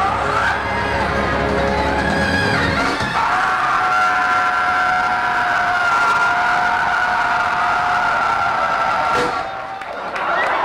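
Live funk band playing the song's ending. For about three seconds the full band plays with bass and drums, then the band drops out and a single long held note carries on for about six seconds before cutting off near the end.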